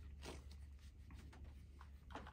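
Faint scratching of a felt-tip marker writing a signature on a playing card, in a few short strokes, over a low steady hum.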